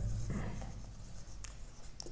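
Marker pen writing on a whiteboard: faint, short scratchy strokes.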